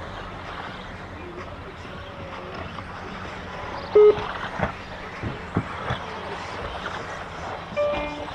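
Radio-controlled buggies running on a turf track over a steady background noise, with a few sharp knocks. Two short pitched beeps sound, a loud one about four seconds in and another near the end.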